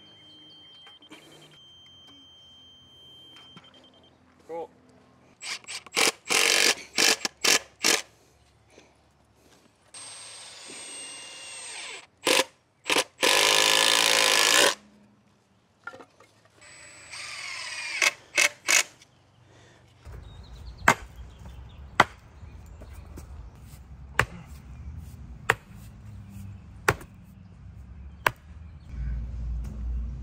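Cordless power driver driving screws into wooden batter boards in several short runs, the longest about a second and a half, some with a rising whine. In the last third come sharp knocks at irregular intervals over a low rumble.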